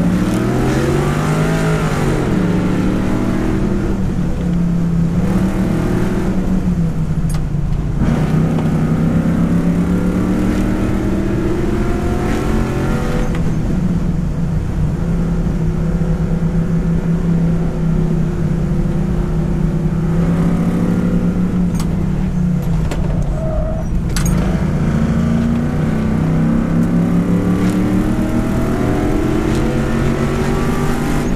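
5.7-litre LS1 V8 of a 1968 C10 stepside pickup pulling hard through an autocross course, its pitch rising and falling repeatedly as the driver accelerates, lifts and gets back on the throttle.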